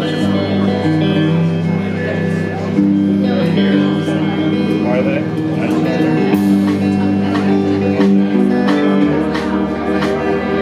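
Live indie rock band playing the instrumental intro of a song: electric guitars and bass over a steadily played drum kit, with no singing yet.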